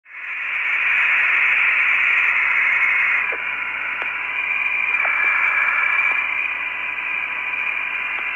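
Radio static from the Apollo 17 air-to-ground voice link: a steady, thin hiss with a faint steady tone under it and a few soft clicks. The open channel carries no voice yet.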